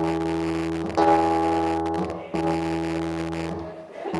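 Acoustic guitar playing a slow instrumental passage: three chords struck about a second apart, each left to ring and fade.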